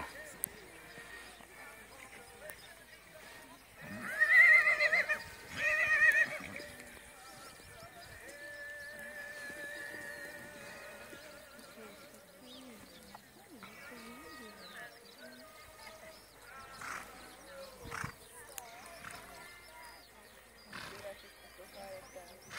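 A horse whinnying twice, about four and six seconds in. Each is a loud, quavering high call.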